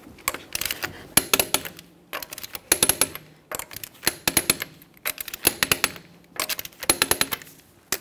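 Torque wrench ratcheting as the wheel's lug nuts are torqued in turn. The clicking comes in about five short bursts of rapid clicks with brief pauses between.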